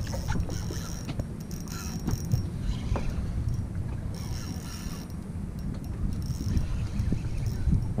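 Steady low wind noise on the microphone and water against the hull of a small boat. A faint high whirr comes twice, from a spinning reel as a hooked fish is played.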